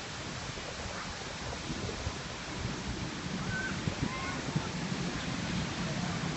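Steady rushing and splashing of fountain jets falling into a pool.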